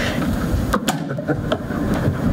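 People moving about a meeting room, with a few sharp clicks or knocks about three-quarters of a second in and again later, over a steady low rumble.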